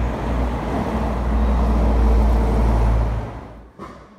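Street traffic noise with a heavy low rumble, fading out about three and a half seconds in, followed by a single click.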